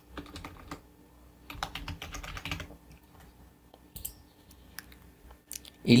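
Typing on a computer keyboard: quick runs of keystrokes with pauses between them, thinning out in the second half.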